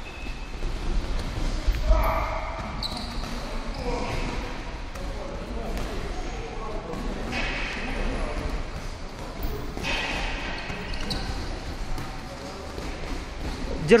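Sparring in a boxing gym: boxing gloves landing punches and feet moving on the ring canvas, a run of irregular thuds with a heavier thump about two seconds in. Indistinct voices murmur in the background.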